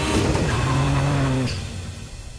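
Rallycross car passing close by at speed, its engine note dropping sharply in pitch as it goes past, then holding a steady lower tone for about a second before fading away.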